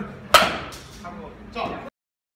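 A baseball bat striking a ball with one sharp crack about a third of a second in, followed by a fainter knock.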